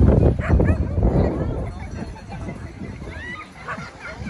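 A dog barking and yipping a few times, with a longer whining yip about three seconds in, among the voices of people nearby.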